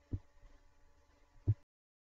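Two dull low thumps about a second and a half apart, from handling near the computer microphone, over a faint steady hum. The sound then cuts off abruptly.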